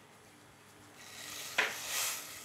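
Caster sugar poured from a glass bowl into a stainless-steel saucepan of coconut cream: a soft hiss of falling grains building from about halfway in, with one light tap shortly before the end.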